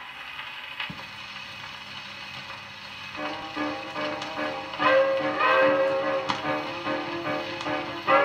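Shellac gramophone record played with a thorn needle on a portable record player. For about three seconds only surface hiss is heard, with a click about a second in, then a dance orchestra's recording starts with steady brass-like tones over the hiss.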